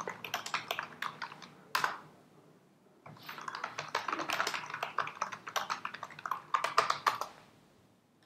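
Rapid typing on a computer keyboard in two runs of quick keystrokes. The first ends with a single sharper key press, then there is a pause of about a second before the second, longer run.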